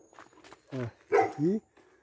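A dog barking, a few short barks about a second in after a brief lull.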